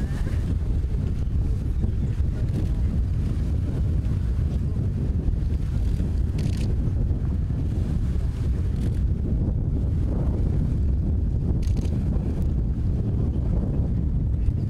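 Wind buffeting an outdoor microphone: a steady, low rumble throughout, with faint voices under it.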